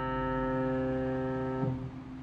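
A chord held on an electric keyboard with a piano sound, slowly fading, then released near the end so that the notes stop.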